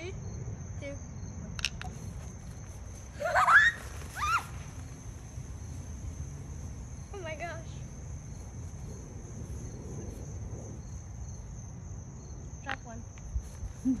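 Crickets chirping steadily, with a child's high, rising shriek about three seconds in and a shorter vocal cry around seven seconds; a laugh at the very end.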